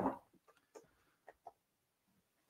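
Near silence: room tone with three faint, short clicks in the middle.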